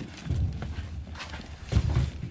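Cardboard boxes and parts being handled on an aluminium diamond-plate toolbox: a few dull knocks with light rustling, the loudest knock near the end.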